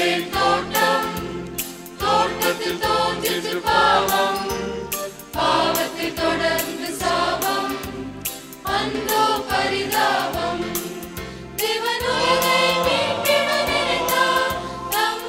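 Mixed church choir singing a Tamil Christmas song in phrases, over an accompaniment with a steady beat and a bass line.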